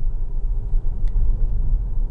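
Steady low rumble of tyres on asphalt inside the cabin of a Tesla Model S, an electric car with no engine note, driving at about 40 km/h.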